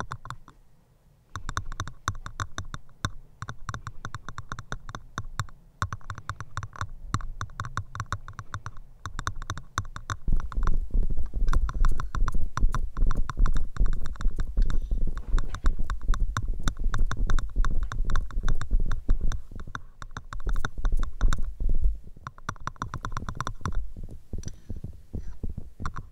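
Fast, dense crackling and scratching right against the microphone, as in ASMR ear triggers. From about ten seconds in until about two seconds before the end, a heavy low rumble joins it and it grows louder.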